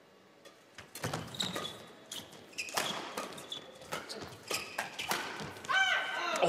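Badminton rally: sharp cracks of rackets striking the shuttlecock at irregular intervals, starting about a second in, with short squeaks of players' shoes on the court between the hits.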